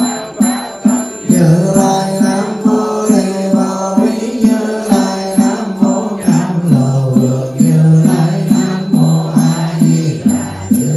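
Buddhist monk chanting a sutra into a microphone in a steady, near-monotone voice that steps down and back up in pitch, kept in time by a wooden fish (mõ) knocked evenly about two to three times a second.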